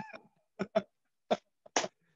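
Laughter in about five short, breathy bursts with silent gaps between them.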